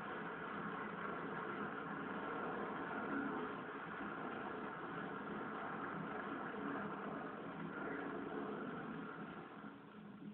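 Muffled soundtrack of a film playing on a television, heard through the room: a steady machine-like noise that fades down near the end.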